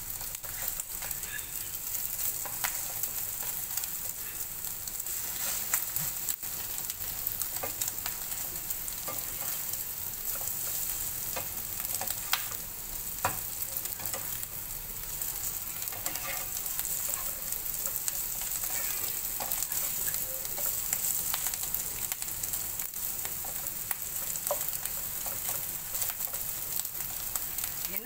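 Egg omelette pieces frying and sizzling steadily in a pan, with scattered scrapes and taps of a spatula against the pan as the pieces are turned.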